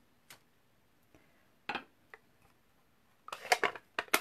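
A few light, scattered clicks and taps of small craft supplies being handled and set down on a work surface, with a quick cluster of clicks near the end.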